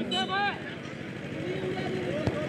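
A male commentator's voice stops about half a second in. After that comes a steady outdoor background of spectator chatter with faint scattered voices.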